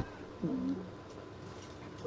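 A short, faint vocal murmur from a person, about half a second long, starting about half a second in, over low room noise.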